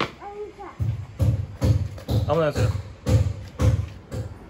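Footsteps thudding on a hollow wooden floor, a dull regular beat of about two steps a second starting about a second in, with a young child's voice chattering over them.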